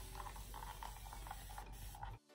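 Trigger spray bottle misting water onto curly hair, a faint hiss of spray with quick repeated pumps of the trigger.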